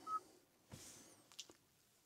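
Car infotainment touchscreen giving one short beep as Start is pressed on the update prompt. Then near silence, with a faint click about one and a half seconds in.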